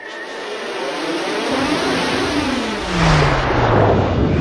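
Animated sound effect: a rush of noise that builds steadily, with a low tone sliding down in pitch and a surge in loudness about three seconds in.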